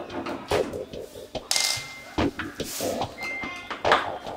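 Scattered knocks and clicks of hands and a screwdriver working at the plastic back cover of a flat-screen TV, with a couple of brief scraping hisses.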